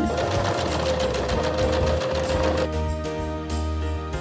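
Electric sewing machine running fast, stitching through wood-veneer fabric and its lining in a quick steady run of needle strokes.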